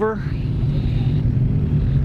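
Suzuki GSX-R sport bike's inline-four engine running steadily at low revs, a constant low hum with no revving.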